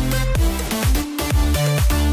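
Background electronic dance music with a steady beat and deep bass hits.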